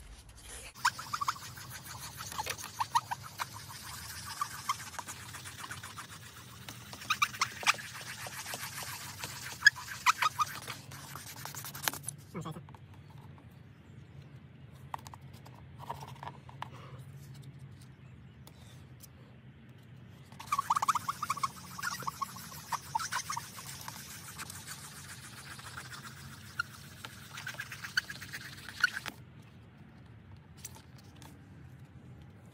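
A 3000-grit sanding pad scrubbing quickly back and forth over a wet plastic headlight lens to cut away its dull, clouded surface. The rubbing comes in two long spells with a quieter pause between them.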